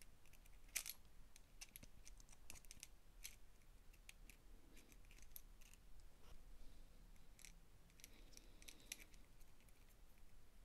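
Faint, scattered metallic clicks and taps as steel tweezers set small steel planet gears onto their axles in a Makita DF001G drill's planetary gearbox; the sharpest click comes about a second in.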